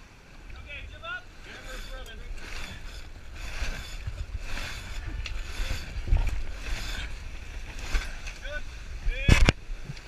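Wind buffeting the microphone on a sailboat while a line is hauled hand over hand at the mast, the rope rasping through its blocks in a run of repeated pulls. A sharp, loud sound comes near the end.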